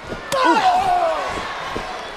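A single sharp impact in the wrestling ring, followed at once by a loud drawn-out yell that falls in pitch over about a second.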